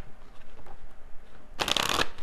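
A deck of tarot cards being shuffled by hand: soft scattered card noise at first, then a short louder burst of shuffling near the end.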